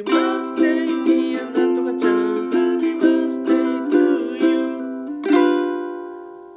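Ukulele strummed through a short chord progression at about two strokes a second, then a final G7 chord struck a little after five seconds and left to ring out and fade. Ending on G7 rather than the home chord C sounds unresolved, as if the song has not finished.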